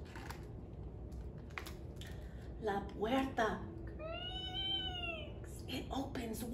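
A woman's voice making one long, high, meow-like sound that rises and then falls, about four seconds in, after a few soft murmured sounds.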